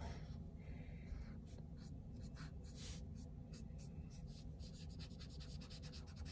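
Alcohol marker tip scratching over paper in many quick, short colouring strokes, faint.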